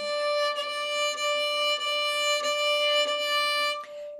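Violin bowed on one sustained high note, repeated in even bow strokes about every half second or so, stopping just before the end. The bowing is played with the elbow held low, a position said to make it hard to play loudly.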